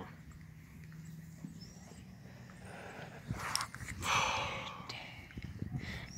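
A few handling clicks, then about four seconds in a loud hiss lasting most of a second, as gas from an air duster can is drawn in by mouth, followed by softer rustling.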